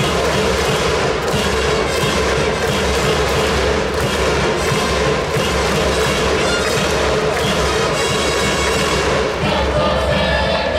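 Baseball stadium crowd with an organised cheering section: a steady drumbeat and a cheer song carried over the continuous crowd noise, loud throughout.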